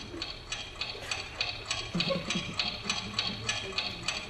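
A clock ticking as a sound effect, with fast, even ticks at about four a second, marking the passage of time.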